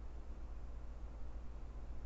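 Low, steady electrical hum under a faint hiss: the background noise of a desk microphone between words.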